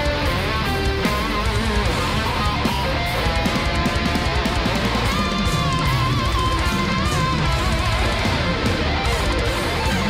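Death metal song playing: electric guitars and fast drums, with a lead guitar line that holds a wavering note in the middle.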